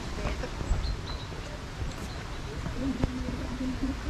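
Footsteps on a wooden boardwalk, a few irregular knocks, over a low wind rumble on the microphone. A short low hum comes near the end.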